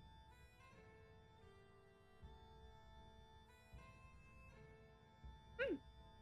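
Faint background music with steady held notes, and a woman's short "mm" near the end.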